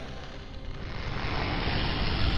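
A dense, rumbling noise that grows steadily louder.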